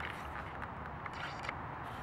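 Light footsteps and scuffs on a leaf-strewn brick path, a faint step every half second or so, over a steady outdoor background hiss.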